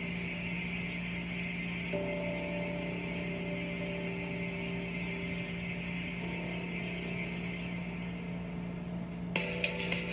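Soft, sustained dramatic underscore music from a TV soap opera, a few held notes coming in about two seconds in, heard through the TV speaker over a steady hum and hiss. A few sharp clicks come near the end.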